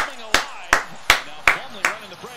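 Six sharp hand claps in an even rhythm, about three a second, stopping just before the end, with faint game commentary underneath.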